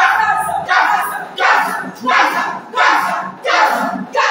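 Voices shouting loud, repeated bursts of prayer, a new shout about every two thirds of a second, in a small echoing room.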